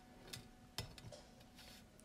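Near silence with two faint clicks in the first second, fingers touching a stainless steel bowl while picking a bit of eggshell out of a cracked egg.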